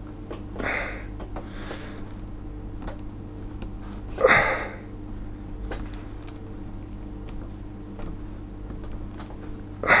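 Small screwdriver working the stiff bottom-case screws of a MacBook Air, heard as scattered faint clicks, over a steady low hum. The screws are stiff because the swollen battery is pressing the case out. A few heavy breaths of effort break in, the loudest about four seconds in.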